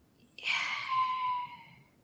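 A woman's long sigh: one breathy exhale, about a second and a half long, that fades away.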